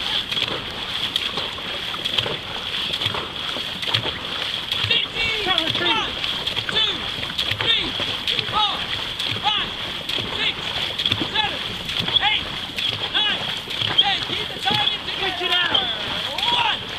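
Dragon boat crew paddling in unison: wooden paddles splash into the water stroke after stroke, with voices calling out over it.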